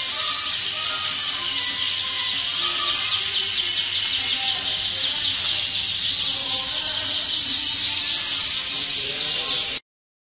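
Many caged domestic canaries singing at once: a dense, high-pitched chorus of rapid trills and chirps that cuts off suddenly near the end.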